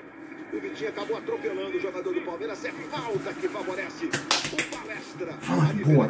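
Football match broadcast heard over a speaker: a commentator talking over stadium sound, with a quick run of sharp slaps about four seconds in.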